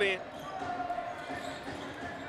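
Basketball being dribbled on a hardwood court, heard as faint irregular bounces over a low, even arena background.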